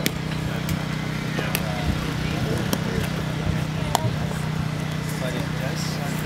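Footbag being kicked during a footbag net rally: sharp taps about a second apart, over a steady low hum and faint voices.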